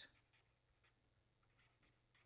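Faint scratching of a pen writing on paper, a few light, irregular strokes.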